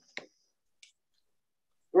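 Two short clicks about two-thirds of a second apart, the first louder and sharper, over near silence.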